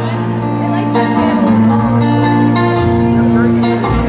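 Live banjo and acoustic guitar playing together, the banjo picking over strummed guitar chords in a folk song.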